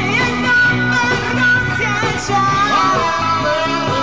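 Live music: a singer holding long, gliding notes over a band accompaniment with a steady, regular beat.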